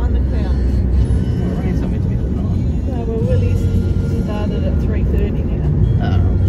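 Steady low road and engine rumble inside a moving car's cabin on a sealed road, with a voice heard on and off over it.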